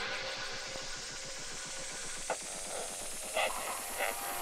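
Rising white-noise sweep in a drum and bass mix: a build-up with the beat dropped out, the hiss climbing steadily in pitch, with two short hits about two and a third seconds in and near the end.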